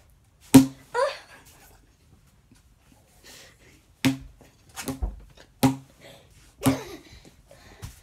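A long cardboard tube striking something in a series of sharp knocks with a short low ring: one about half a second in, then four more in quick succession from about four seconds in.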